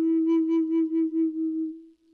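Wooden Native American-style flute holding one long low note with a wavering pulse in its loudness, fading away near the end.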